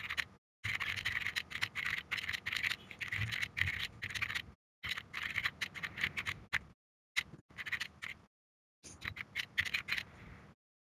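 Rapid typing on a computer keyboard: quick runs of keystroke clicks in bursts with a few short pauses, heard through a video call whose audio drops to silence between bursts.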